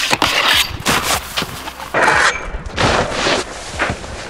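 Snowboard on a metal handrail: a run of loud scrapes and knocks as the board slides along the rail, then comes off it as the rider falls.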